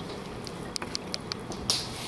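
Stainless-steel kitchen tongs clicking and tapping, about eight short sharp clicks over a second and a half, as steak slices are picked up and laid on a ceramic plate.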